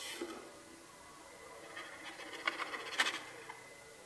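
Faint rustling and light taps of aluminium sulphate powder being poured slowly from a small container into a plastic bottle of water, with a sharper tick about three seconds in.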